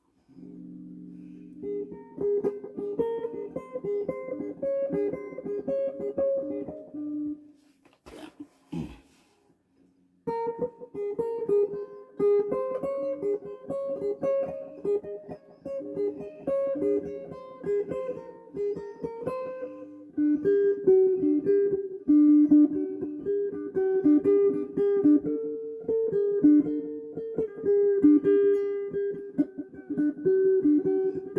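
Spectrum electric guitar played solo: a chord rings briefly, then quick runs of picked single notes. Playing breaks off for about two seconds with a couple of knocks, then resumes and grows louder after about twenty seconds.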